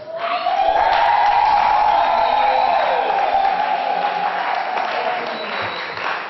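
Congregation clapping and cheering, with one long high cry rising and then slowly falling over it for about five seconds.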